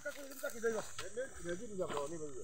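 People talking at some distance from the microphone, their words unclear, over a steady high hiss.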